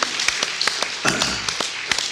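A congregation applauding, with sharp, close hand claps standing out over the crowd's clapping.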